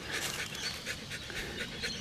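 A husky panting with its mouth open, quick and even.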